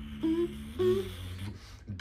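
Vocal beatbox cover: a steady hummed bass line held low under short hummed melody notes repeating about twice a second, thinning out near the end.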